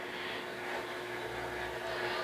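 Quiet room tone: a faint steady hum with one thin, constant tone running through it.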